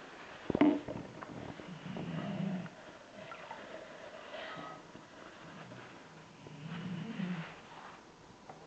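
Iodine crystals tipped from a plastic bag into a glass jug of potassium iodide solution: a sharp click about half a second in, then light crinkling of the plastic bag. A low hum-like sound comes twice, about two seconds in and near the end.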